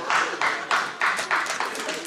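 Audience laughing and clapping after a stand-up punchline, a run of scattered claps over crowd laughter.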